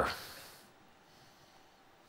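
A man's speech cutting off, followed by a brief breathy sound that fades within about half a second, then near silence: room tone.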